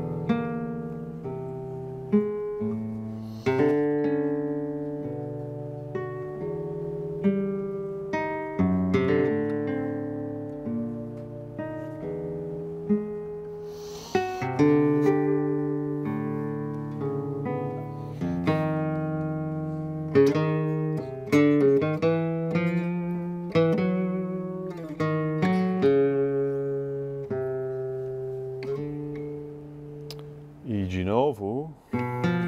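Nylon-string classical guitar played solo, its notes and chords plucked and left to ring, with a low repeated ostinato set against a higher melody line.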